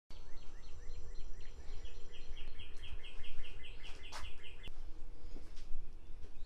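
A songbird singing a long series of rapid, evenly repeated down-slurred notes, about five a second, which stops shortly before the end. A steady low rumble runs underneath, and there is one sharp click about four seconds in.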